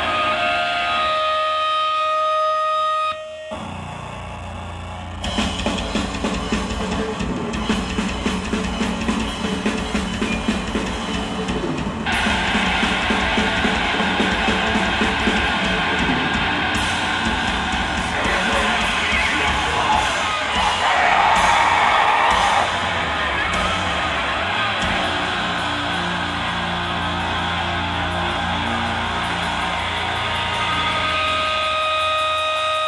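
Live heavy band: distorted electric guitar and drum kit. It opens with a held, ringing guitar tone, dips briefly, then comes in fast and dense with rapid drumming from about five seconds in, and ends on held ringing guitar tones.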